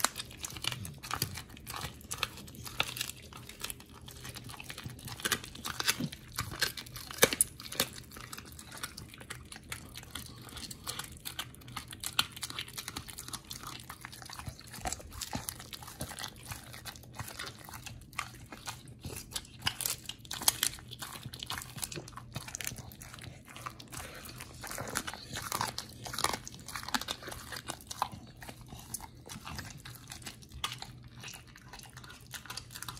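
American pit bull terrier chewing and crunching a hand-held chunk of raw meat, with irregular wet bites and crunches that go on without a break.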